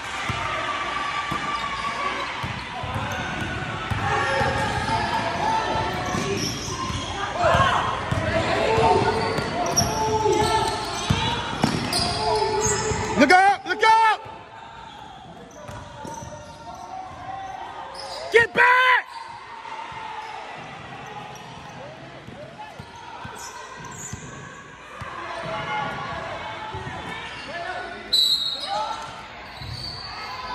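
A basketball game in a gymnasium: a ball bouncing on the court amid players' and spectators' voices, all echoing in the hall. Two brief loud squeals come a little before and a little after the middle, after which it goes quieter.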